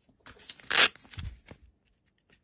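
Handling noise from a fabric lock pick case and a rubber-handled pick: rustling and small clicks, with one loud scratchy rasp a little under a second in.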